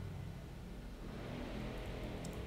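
Quiet room tone: a steady low hum with faint hiss, and no distinct event.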